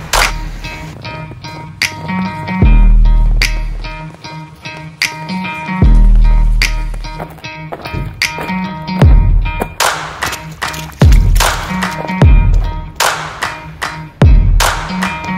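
Background music with a beat: sharp drum hits and two long deep bass notes.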